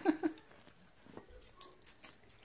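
A few faint, sharp clicks of coins being picked up and handled as they are counted.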